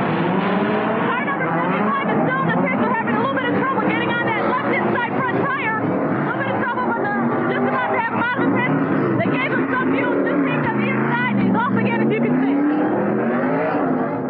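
NASCAR stock car V8 engines running on the track and pulling away from pit road, several engine notes rising and falling in pitch; near the end one engine's note drops and climbs back up.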